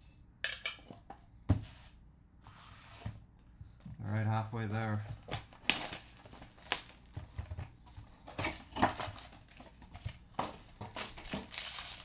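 Handling trading cards: clear plastic top-loaders clicking against each other, then from about halfway a busy run of crinkling and tearing as a foil card pack wrapper is handled and opened.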